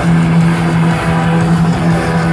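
Live heavy metal band playing loud, with distorted electric guitars holding a sustained low note over drums, heard from the crowd. The held note breaks off briefly about a second in and again near the end.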